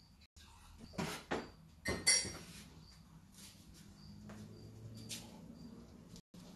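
A cup being handled on a table: a few light knocks, then a louder clink with a short ring about two seconds in.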